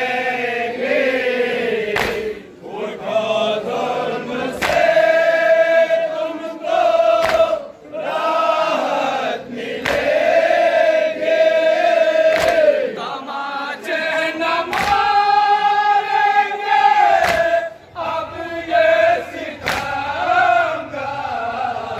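A group of men chanting a nauha, a mourning lament, in unison with long drawn-out notes. The chant is punctuated every two to three seconds by a sharp slap of matam, hands striking chests in time.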